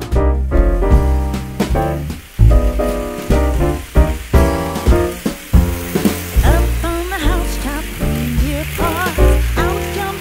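Background music with a steady beat and bass line; a wavering lead melody comes in just past the middle.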